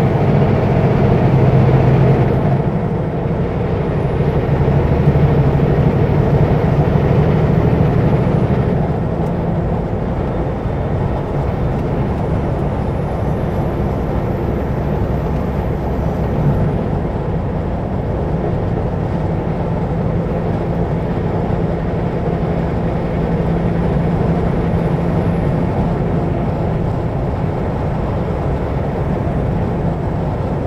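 Kenworth W900L semi truck's diesel engine running under way at highway speed with road noise. Its low drone eases off and picks up again a few times.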